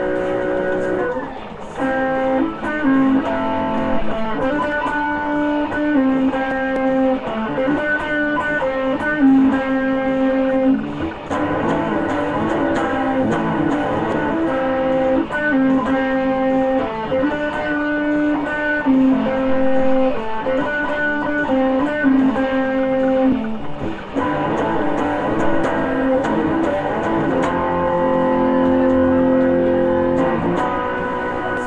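Amplified Stratocaster-style electric guitar playing a rock song: held single notes in a melodic phrase that repeats every few seconds, with brief breaks about a second in, around a third of the way through, and near the end.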